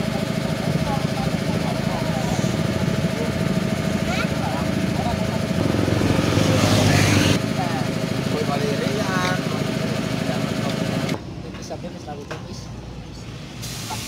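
A motor running steadily, with voices over it and a louder rush of noise for about a second and a half, about six seconds in. The drone stops suddenly at about eleven seconds, leaving quieter background sound.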